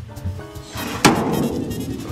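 The back door of a 1957 Volkswagen Type 2 bus slammed shut once, about a second in: a single sharp bang with a short ring after it. The door shuts cleanly, in very good condition.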